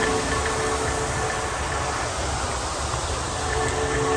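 Steady rushing noise, heaviest in the low end, with faint music fading out in the first second or so.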